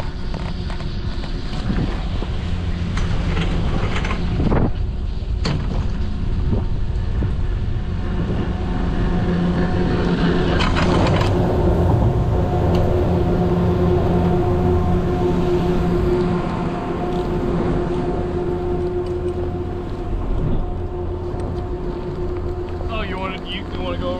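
Chairlift machinery running: a steady hum with several held tones, loudest about halfway through as the chair passes through the top terminal. A couple of sharp clunks come about four to five seconds in.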